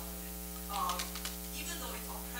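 Steady electrical mains hum with a ladder of overtones, and a short stretch of faint, distant speech about halfway through.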